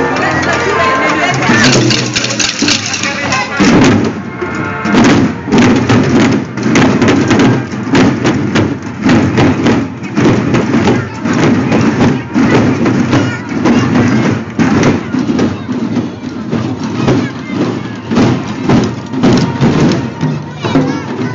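Many small stick-beaten drums played together by a group of children and adults, in a steady, fast, rhythmic pattern. The drumming comes in at full strength about four seconds in, as a wind-instrument tune dies away near the start.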